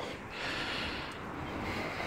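Bullmastiff sniffing and snuffling with its nose down at a hedge: a steady, breathy noise.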